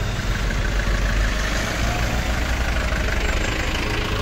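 A vehicle's engine running steadily with road and wind noise, heard while riding along; the sound is loudest at the low end.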